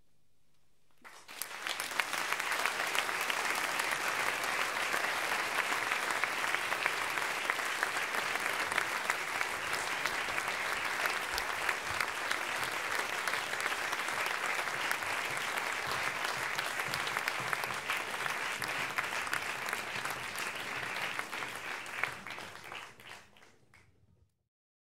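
Concert audience applauding: dense clapping that breaks out about a second in, holds steady, and dies away near the end.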